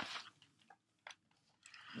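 Mostly near silence: a brief papery rustle right at the start, then a few faint ticks, as a hardcover picture book is handled and its pages begin to turn.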